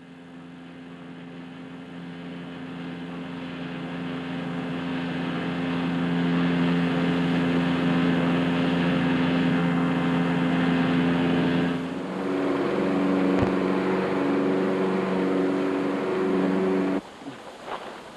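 A motorboat's outboard engine running steadily and growing louder over the first several seconds, as if approaching. About twelve seconds in its pitch steps up and it runs unevenly until it stops near the end.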